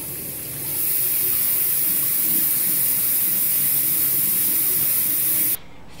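Bathroom sink faucet running hard into the basin with water spraying and splashing. The rush of water gets louder about a second in as the tap is turned up, and cuts off suddenly near the end.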